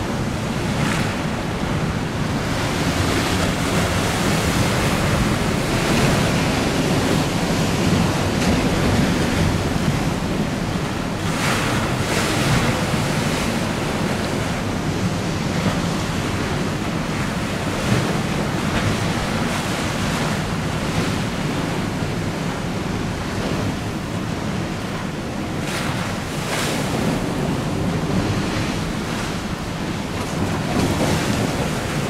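Wind buffeting the microphone over choppy river water washing and slapping, a steady rushing noise that swells in gusts a few times.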